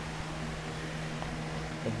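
A steady low background hum with a faint even hiss and no distinct events.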